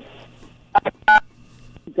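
Telephone line carrying three short keypad-style beeps: two quick blips, then a slightly longer one, over a faint line hum.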